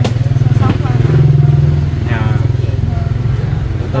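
An engine running close by, a steady low pulsing drone that swells about a second in and then eases, with brief snatches of speech over it.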